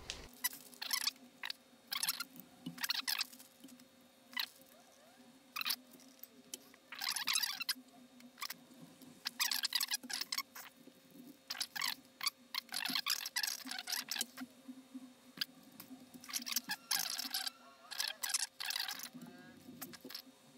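Irregular bursts of rustling and crinkling from small plastic component bags and paper packaging being handled, over a faint steady hum.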